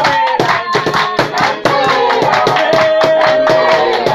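A church worship group and congregation singing a chorus together, with held and sliding sung notes over fast, steady hand clapping.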